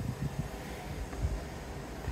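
Quiet, steady low background rumble with no distinct event.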